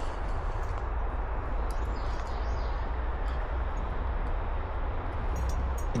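Woodland ambience in light rain: a steady low rumble and an even hiss, with a few faint high chirps or ticks about two seconds in.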